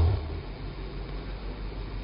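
Steady background hiss with a low hum underneath, in a pause between spoken phrases; the tail of the last word fades just at the start.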